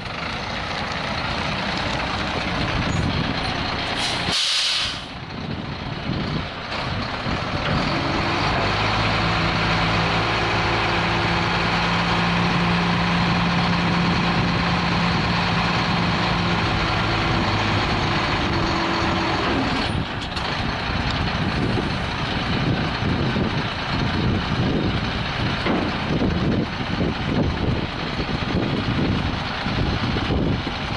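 Diesel engine of an International medium-duty dump truck running as the truck pulls up, with a short air-brake hiss about four seconds in. Then a steady hum from the running engine and hydraulic hoist raises the dump bed for about ten seconds. After that the steady hum stops and the engine keeps running while the bed is lowered.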